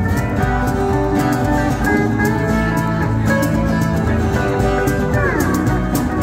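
Live country band: a Williams pedal steel guitar plays the lead line in long, sustained notes over strummed acoustic guitar and hand percussion on a cajon. Near the end the steel's notes slide downward in pitch together.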